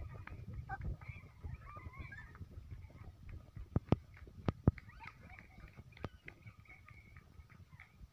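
Rumbling handling noise and footsteps from a phone carried by someone hurrying on foot, with a few sharp knocks about four seconds in. Faint wavering high-pitched calls sound in the background.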